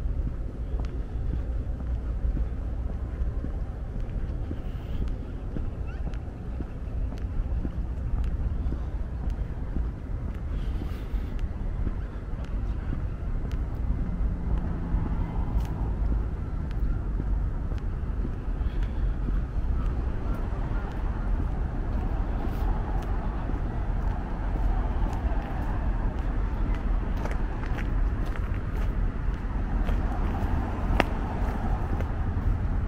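Outdoor street ambience: a steady low rumble of road traffic, with no single sound standing out.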